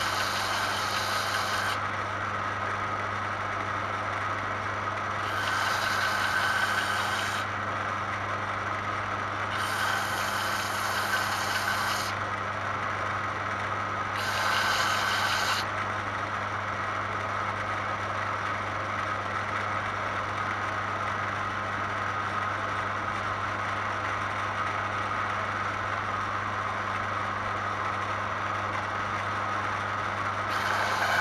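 Roher belt and disc sander running steadily with a low motor hum. Four times in the first half, a small resin coaster is pressed onto the moving abrasive belt, each pass adding a hiss of sanding lasting a second or two, to flatten the coaster's bottom. After that the sander runs unloaded.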